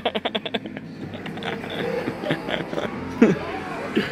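Laughter trailing off in the first half-second, then the murmur of a busy indoor hall with faint voices, and a short vocal sound about three seconds in.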